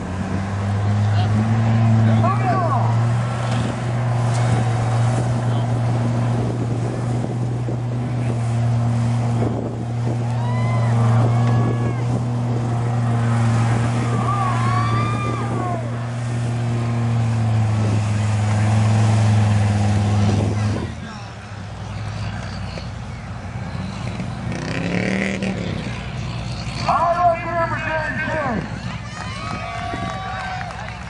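Dodge Ram pickup truck's engine held at steady high revs while the truck churns through a mud bog, its pitch staying level, then easing off sharply about two-thirds of the way through.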